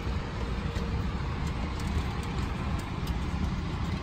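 Steady low rumble with an even airflow hiss inside an Airbus A321 cabin parked at the gate: the cabin air conditioning running.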